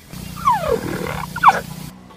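A big cat growling, with two downward-sliding calls about half a second and a second and a half in; it cuts off suddenly near the end.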